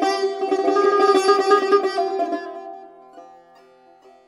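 Persian tar played solo with a plectrum in the Bayat-e Esfahan mode: rapid, closely spaced strokes on held notes for about two seconds, then the strings left to ring and die away to near quiet.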